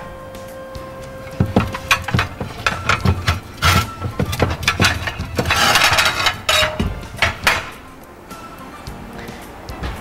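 Ceramic plates clinking and knocking against one another as one is taken from a stack on a cupboard shelf: a run of sharp clicks over several seconds, with a brief louder burst of noise about halfway through. Quiet background music runs underneath.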